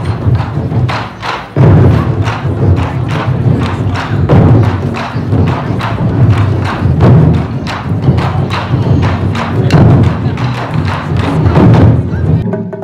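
Taiko drum ensemble playing live: a fast, driving run of heavy, booming drum strikes that grows louder about a second and a half in.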